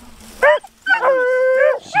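Beagles baying: a short yelp about half a second in, then one long drawn-out bay held at a steady pitch for nearly a second.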